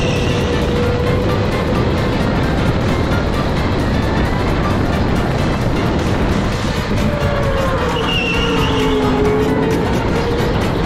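Onboard a Sodi RTX electric go-kart at speed: steady wind and tyre noise with the electric motor's whine, which drops in pitch near the end as the kart slows into a turn. Music plays over it.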